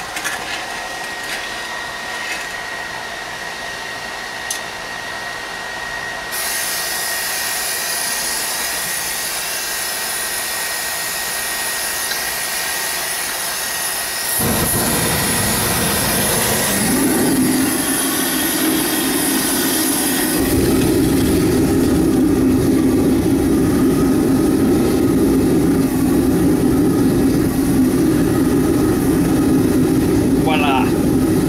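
Electric blower fan running steadily, with a higher hiss joining about six seconds in. About fourteen seconds in a deep roar starts as the jet A–fired oil burner lights and the furnace fires, growing fuller and louder around twenty seconds in and then holding steady.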